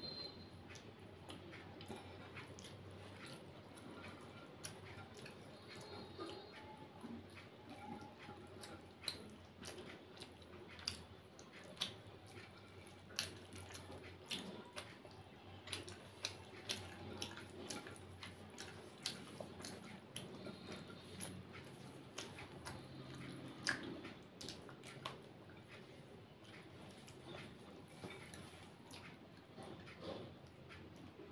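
Close-miked wet chewing and mouth clicks of a person eating by hand, faint, with many short sharp smacks that come thickest through the middle of the stretch.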